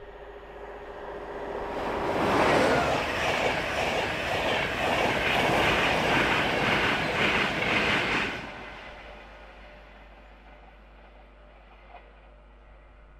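Class 91 electric locomotive and its train of Mark 4 coaches passing at high speed. The rush of wheels on rail builds over about two seconds and holds loud, with a quick rhythmic clatter of wheels over the rails, for about six seconds. It then drops away sharply as the tail of the train goes by and fades out.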